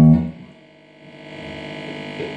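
Electric guitar through an amplifier: a held note rings and dies away within the first half second. Amplifier hum and faint sustained string tones follow, slowly growing.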